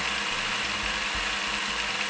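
Milling machine running steadily, a coated end mill side-cutting steel bar stock held in a vise to square it up.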